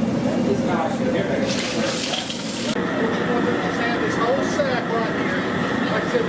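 Several people talking in the background, no one voice clear. A brief hissing rush starts about a second and a half in and cuts off sharply about a second later.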